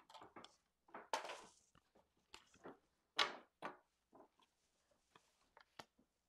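Faint handling of cardstock: a string of short rustles, slides and taps as cut paper pieces are moved on a paper trimmer and set on the table, the loudest about three seconds in.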